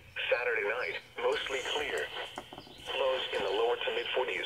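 A voice reading a weather forecast over a radio, sounding narrow and thin as a radio broadcast does, with short pauses between phrases.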